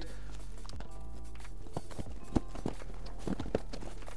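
Cardboard boxes being set down and shifted while stacked on a pallet: a few scattered soft knocks, the sharpest about halfway through, over quiet background music.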